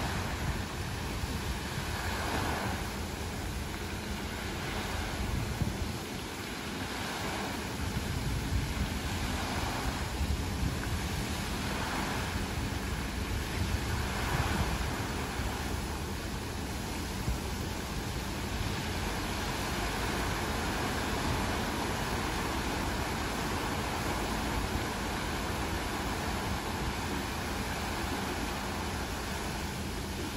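Water jets of the Agam fountain splashing down into the basin: a steady rush of falling water that swells every two to three seconds in the first half, with wind buffeting the microphone.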